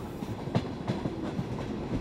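Double-deck TGV passenger train rolling past a station platform: a steady low rumble with many small, uneven wheel clicks. It begins shortly after the start.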